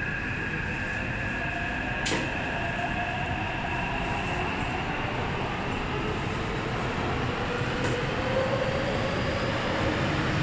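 Taipei Metro C371 subway train heard from inside the car as it runs through a tunnel: a steady rumble of wheels on rail under a motor whine that climbs in pitch, with a sharp click about two seconds in and another near the end.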